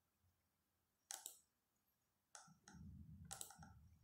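Faint computer mouse clicks: a quick pair about a second in, then four more scattered through the last second and a half, over a faint low rumble.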